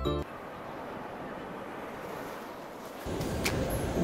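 Ocean surf washing over a rocky shore, an even rushing noise, heard in a break in the music. The backing music comes back in near the end.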